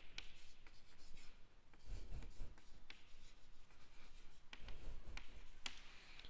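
Chalk writing on a chalkboard: faint scratching with light ticks of the chalk as words are written.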